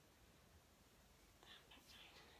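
Near silence: room tone, with a few faint, short breathy sounds about one and a half seconds in.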